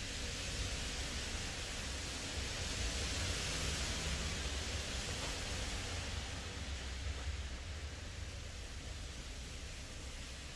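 Heavy rain falling outside, a steady hiss that swells a little a few seconds in, over a low rumble.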